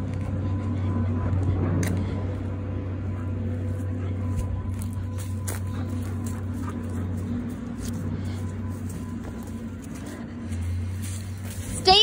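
A steady low machine hum, like an idling engine nearby, with a faint steady whine above it and a few light clicks.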